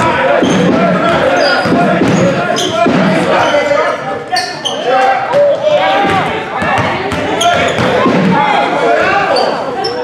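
Live basketball play on a hardwood gym floor: a ball dribbling, sneakers squeaking and players and spectators calling out, all echoing in the gym.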